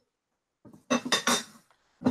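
A brief cluster of clinks and knocks about a second in, heard over a conference-call phone line.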